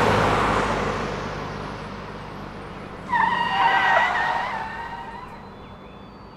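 A box truck speeding by: its engine and road noise come in suddenly and loud, then fade as it pulls away. About three seconds in, tyres screech for about two seconds.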